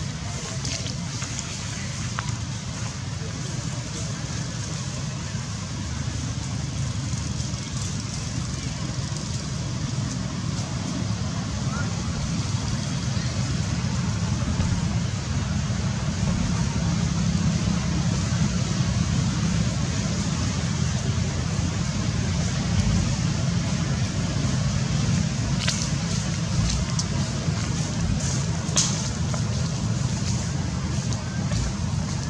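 Steady low rumble and hiss of outdoor background noise with indistinct voices, growing slightly louder partway through.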